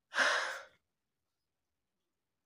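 A woman's nervous, breathy sigh, once, lasting about half a second.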